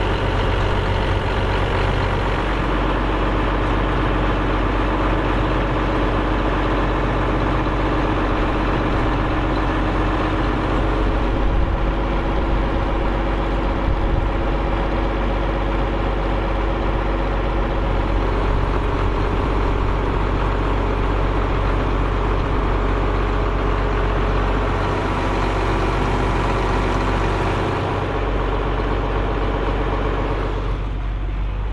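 Large farm tractor's diesel engine running steadily, its note shifting a few times.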